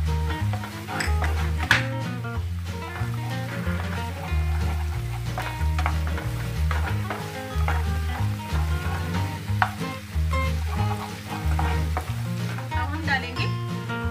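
Chopped onion, garlic and grated ginger sizzling in hot oil in a nonstick pan while a wooden spatula stirs and scrapes them, with short scraping clicks. Background music with a steady bass line plays throughout.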